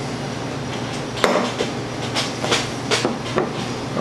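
A few light knocks and clinks of glass beer bottles and glasses being handled and set down on a wooden bar top, about five spread over a few seconds, over a steady low hum.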